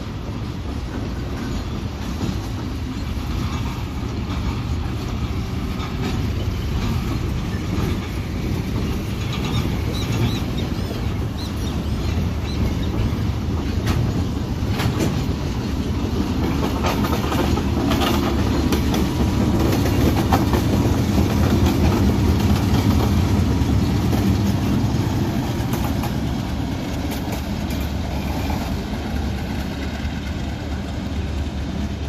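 Diesel-hauled work train passing at low speed: the locomotive's engine drones steadily while wheels click over rail joints. It grows louder to a peak about twenty seconds in, as the locomotive goes by, then fades a little as it moves away.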